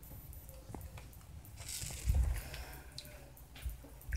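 Soft footsteps in slide sandals on carpet, with phone-handling noise: a few dull thumps, the loudest about two seconds in, with light rustling and clicks.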